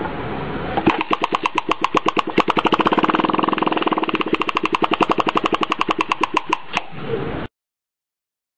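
Electrical sparks from a water spark plug circuit, snapping in a fast, even rhythm of about ten a second, starting about a second in and stopping shortly before the sound cuts off abruptly.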